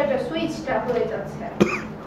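Talk in a small room, with a person coughing once, sharply, about one and a half seconds in.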